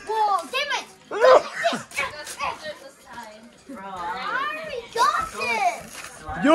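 Several children's high voices talking and calling out over one another, none of it clear enough to make out as words.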